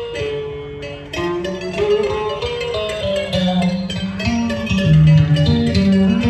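Instrumental interlude of Vietnamese cải lương music between sung verses: a plucked string instrument plays a stepping melodic line over lower bass notes.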